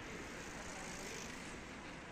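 Steady outdoor street background noise with a faint hum of distant traffic.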